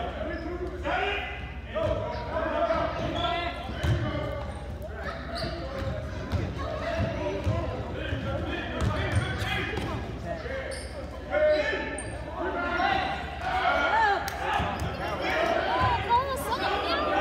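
A basketball being dribbled on a gym court during play, a series of short bounces echoing in the large hall, over a steady background of indistinct voices from players and spectators.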